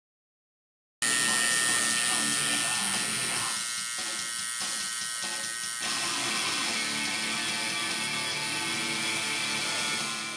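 Electric tattoo machine buzzing steadily as its needle works into skin, starting abruptly about a second in.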